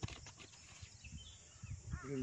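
Faint scattered low knocks with a sharp click at the start, the sound of handling a small plastic bottle, with a few short faint chirps around the middle.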